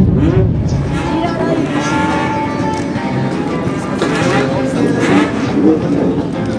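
Old motorcycle engines running, a steady low rumble, with people talking over them.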